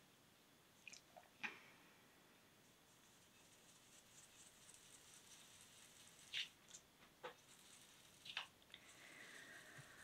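Near silence with a few faint, scattered clicks and a soft scrubbing from about halfway through: a foam ink blending tool being handled and rubbed over paper.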